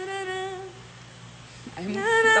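A woman's voice holding the last note of a sung phrase, steady in pitch, stopping just under a second in. Near the end a voice comes in with an 'ai'.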